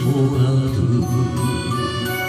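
A man singing an enka song into a microphone over a karaoke backing track; his voice ends about a second in and the instrumental backing carries on.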